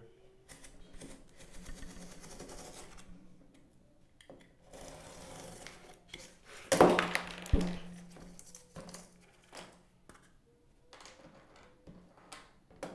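Utility knife blade slicing through corrugated cardboard in drawn-out scraping strokes, with a louder sudden crackle and a sharp click partway through, then a few light knocks as the pieces and knife are handled.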